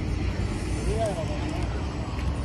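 Outdoor downtown city ambience: a steady low rumble of traffic on the roads around the park, with a faint distant voice briefly about a second in.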